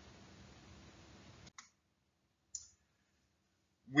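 Faint room tone, then two short clicks about a second apart, each set in dead silence.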